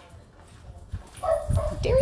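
Small chihuahua-mix dog giving a few high, excited yips and whines in the second half, the last one rising near the end.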